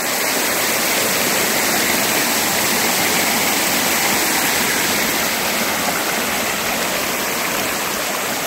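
Small mountain stream rushing over rocks and little cascades, a steady, even sound of running water.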